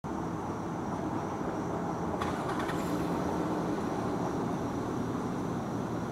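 Steady low rumble of a GP40PH-2B diesel locomotive still far off down the track, approaching at the head of its train. A thin steady high tone sits over it, and a short rattle of clicks comes about two seconds in.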